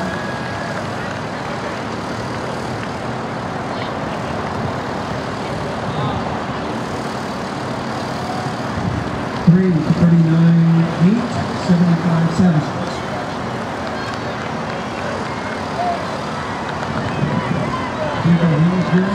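Steady outdoor background noise with no clear source, with a voice calling out for about three seconds halfway through, its words unclear.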